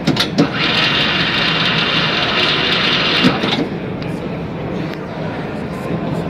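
A BMT BM 70A all-electric pipe bender's 3 HP motor and gear drive running in high-speed mode, turning the bend die through a 90-degree bend. It is a steady high whir that starts about half a second in and stops after about three seconds.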